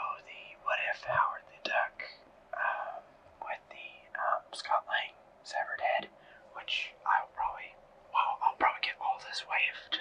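A person whispering steadily in short phrases, the words breathy and without voice.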